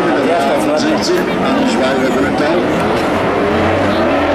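Several stock-car engines running hard at once on a dirt race track, their pitches wavering up and down as the drivers work the throttle.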